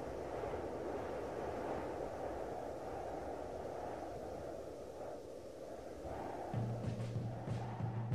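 Quiet, steady low rumbling noise with no distinct events. About six and a half seconds in, a low steady hum joins it.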